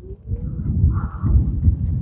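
Wind buffeting the microphone outdoors: an uneven low rumble that comes and goes.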